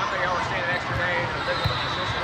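Volleyball being struck during a rally, with a short thump a little past halfway in, over a constant babble of voices in a large echoing hall.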